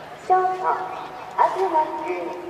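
High-school baseball cheering section in the stands: two short, loud pitched blasts, the first held steady and the second sliding up into a held note, over a low background of the crowd.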